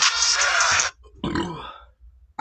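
Music with a beat that cuts off suddenly about a second in, followed by a short, low burp from a man drinking malt liquor.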